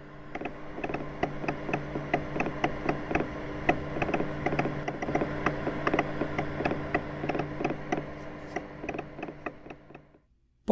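Telegraph instrument clicking rapidly and irregularly over a low steady hum, used as a sound effect; it fades in over the first second and fades out near the end.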